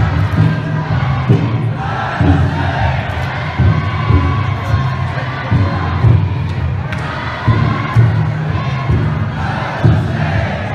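A large team of futon daiko float bearers shouting and chanting together, with the float's taiko drum beating low and repeatedly underneath.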